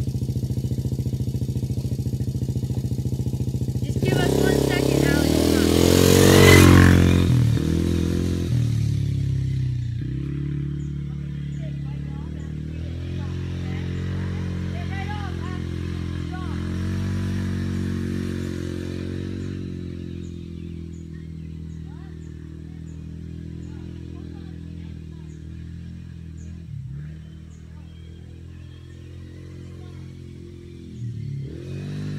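A 110 cc quad's engine idling, then revving hard about four seconds in as it accelerates and passes close by, loudest around six seconds with a drop in pitch as it goes past. After that the engine note rises and falls as the quad rides on, fading steadily into the distance.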